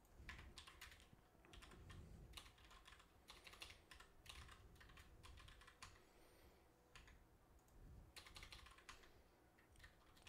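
Faint typing on a computer keyboard: irregular runs of quick keystrokes, with a pause of about two seconds a little past the middle before the typing resumes.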